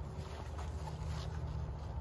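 A low, steady background rumble, with faint rustling of a heavy briar-proof fabric pant leg being handled.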